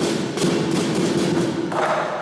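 Lion dance percussion band playing: a rapid run of drum strikes with clashing cymbals and a ringing gong.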